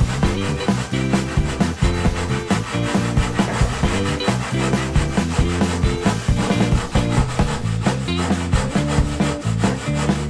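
Hand saw cutting a 45-degree miter through a wooden furring strip in a plastic miter box, in steady back-and-forth rasping strokes. Background music with a stepping bass line and a steady beat plays alongside.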